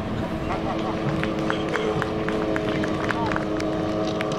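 An engine hums steadily, with small clicks and rustles over it, as of paper handled near the microphone.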